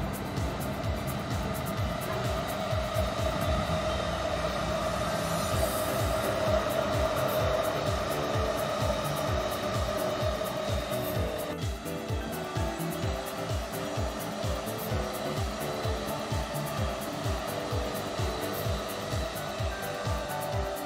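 Background music with a steady beat. Under it, for the first half, a steady whir fits an electric commuter train running across the viaduct; it drops away about halfway through, leaving the music's melody clearer.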